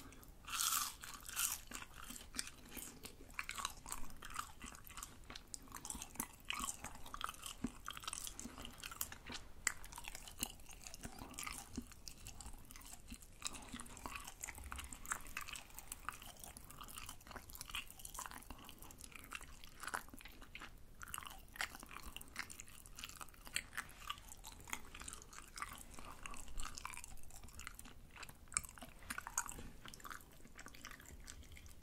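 Close-miked crunching of fried tteok (Korean rice-cake stick): a loud crisp bite about half a second in, then continuous crunchy chewing with irregular crackles.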